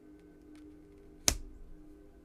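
A single sharp tap a little past halfway as a tarot card is laid down on a wooden table, over soft background music with held notes.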